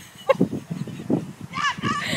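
A dog yelping and whining in excitement: a short yelp a little after the start, then high yelps that rise and fall near the end, over soft low thumps.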